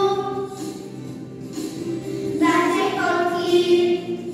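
A choir singing a song in long held notes. The singing thins out about a second in, and a new, fuller phrase starts a little past halfway.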